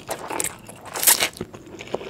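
Close-miked slurping of Indomie Mi Goreng fried instant noodles being drawn into the mouth from chopsticks, with wet mouth clicks and chewing. The loudest slurp comes about a second in.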